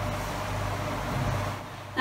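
Steady low hum with faint room noise, no clear knocks or rhythm, easing off slightly near the end.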